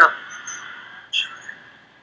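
Faint background of a televised football match in a lull between commentary, with one short high chirp about a second in.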